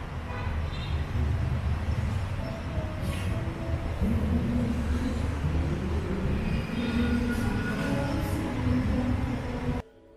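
Street traffic heard from several floors up: a steady low rumble of vehicle engines, with an engine note rising about four seconds in. It cuts off suddenly near the end.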